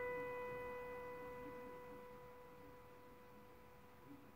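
A single held piano note, B, fading slowly as it decays. It dies away to almost nothing by the end.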